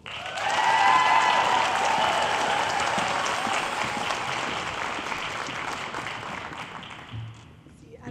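Audience applauding, rising to its loudest about a second in and then slowly dying away, with a voice calling out over it in the first two seconds.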